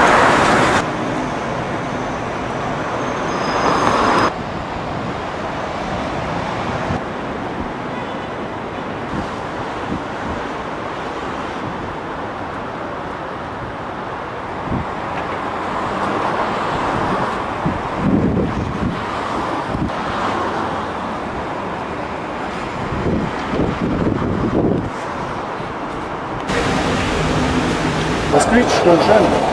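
Steady city road-traffic noise, with passing cars swelling it now and then. The background changes abruptly a few times.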